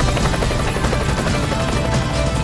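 Helicopter rotor sound effect, a fast even chopping, laid over the programme's theme music.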